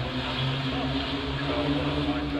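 Vintage racing car's engine running under load on the climb, at a steady pitch that wavers slightly up and down.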